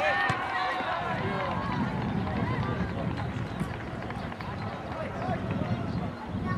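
Distant shouts and calls from football players and onlookers around the pitch, clearest in the first second or so, over a steady low rumble.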